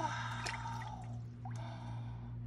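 A woman's drawn-out gasping exclamation, with a few small clicks and crumbles as pieces of a broken toy dinosaur egg are picked apart by hand.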